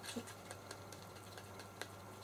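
Paintbrush stirring thinned silicone paint in a small plastic cup: faint, irregular clicks and taps of the brush against the cup, with one sharper tap near the end.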